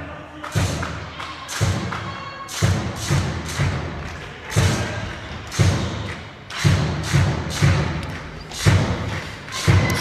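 A steady series of thumps, about one a second, echoing in a large sports hall.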